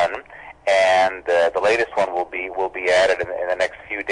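Speech only: a man talking, with short pauses.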